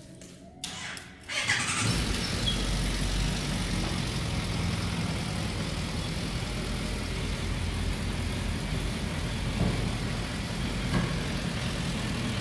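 Suzuki Bandit 1250F's inline-four engine being jump-started on a weak battery: a short burst of cranking, then it catches about a second and a half in and settles into a steady idle.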